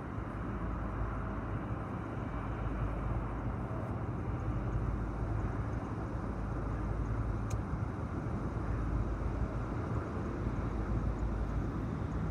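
Low, steady rumble of Huron & Eastern diesel locomotives approaching in the distance, growing slowly louder.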